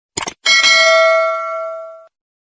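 A quick double mouse-click sound effect, then a bright notification-bell chime that rings out and fades over about a second and a half: the sound effects of an animated subscribe-and-bell reminder.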